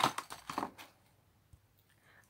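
Paper and small craft items being handled and moved about on a cutting mat: a sharp click at the start, then a second or so of rustling and light tapping, then near silence with one faint tick.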